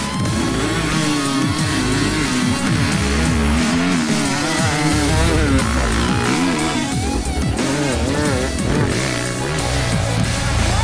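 An HM Honda enduro dirt bike's engine revving up and down repeatedly, mixed with a loud music soundtrack.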